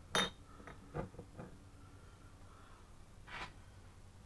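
Glass jam jars clinking as they are handled and matched to lids: one sharp clink with a ringing tail just after the start, a few lighter knocks about a second in, and a brief scuffing sound near the end.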